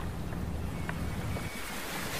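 Wind buffeting the microphone over open-air seaside ambience, a steady rumble that eases about a second and a half in.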